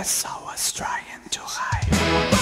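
Heavy metal recording at a break where the full band drops out, leaving three arching, rising-and-falling tones with short hissing bursts. The bass and drums come back in near the end.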